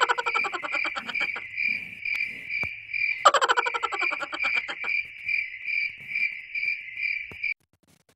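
Cricket-chirping sound effect: an even, high chirp about two times a second, joined near the start and again about three seconds in by a second-long burst of rapid frog-like croaking. It cuts off suddenly about half a second before the end.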